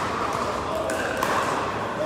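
Echoing background of an indoor pickleball hall: indistinct players' voices with an occasional sharp pop of a paddle striking a plastic ball on neighbouring courts.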